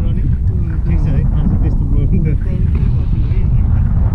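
Airflow buffeting the camera microphone during a tandem paraglider flight: a steady, heavy wind rumble. A person's voice is heard over it.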